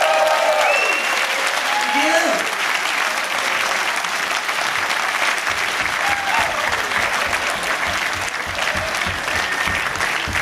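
Live audience applauding, with whoops and shouts over the clapping, most of them in the first few seconds.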